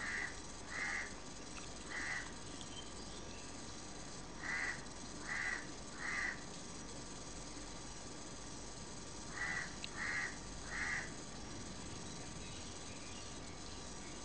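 A bird calling in short, evenly spaced calls, three at a time, in three groups a few seconds apart, over a faint steady background hiss.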